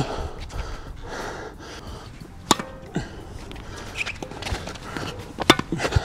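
Tennis ball struck by rackets and bouncing on a hard court during a rally: a few sharp pops, the loudest about two and a half seconds in and another near the end, with shuffling footsteps between.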